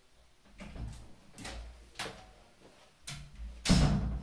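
A few irregular knocks and scuffs of someone moving about off-camera, handling things and perhaps a door, with the loudest just before the end.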